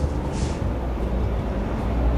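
Steady low background rumble, with a brief scratch of a marker writing on a whiteboard about half a second in.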